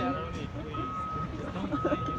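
An electronic beeper sounding one steady high tone, each beep about half a second long and repeating about once a second, in the pattern of a vehicle's reversing alarm. Quieter voices run underneath.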